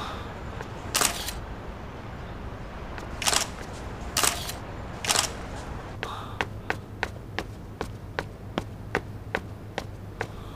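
DSLR camera shutter firing in four short bursts of rapid frames. From about six seconds in, hard-soled footsteps walk briskly on a hard floor, about three steps a second.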